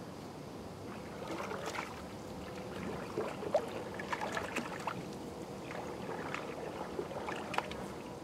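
Canoe paddle strokes in calm lake water: the blade dipping and pulling, with small irregular splashes and drips as the canoe glides.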